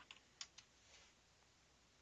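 Faint computer keyboard keystrokes, two quick key presses about half a second in, over near-silent room tone.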